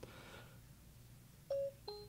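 iPhone dictation chime, a short electronic tone about one and a half seconds in, then a lower note as the phone stops listening and processes the dictation. Faint room tone before it.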